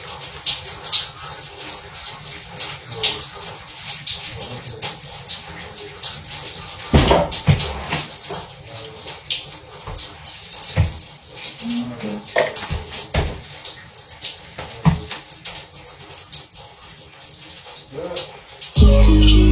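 Shower water running in a small bathroom, a steady hiss. Several knocks and thumps come through it in the second half.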